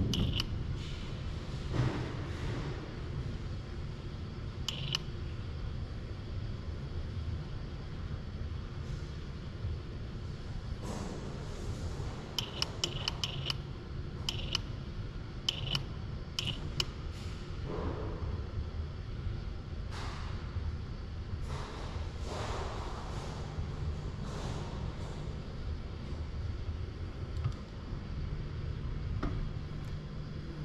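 Light metallic clicks and taps, several in a quick cluster around the middle, over a steady low hum: a UR10e collaborative robot arm's gripper, fitted with gripping pins, handling the steel replacement centre nut at the connector body.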